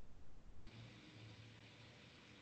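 Near silence: faint room noise and hiss with a low hum.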